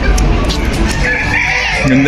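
A rooster crowing, a single call of just under a second starting about a second in, over a steady low rumble.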